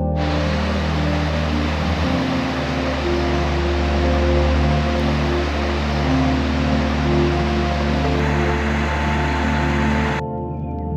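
Soft ambient music with long held notes, over the steady rush of a shallow stream tumbling down a small rocky cascade.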